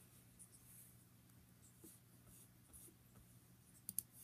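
Near silence: room tone with a faint steady low hum, a few faint rustles and ticks, and a small click near the end.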